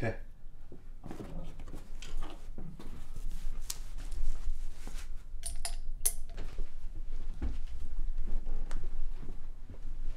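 A person moving about and walking out of a small room: scattered sharp clicks and knocks, clustered around the middle, then low thuds of footsteps toward the end.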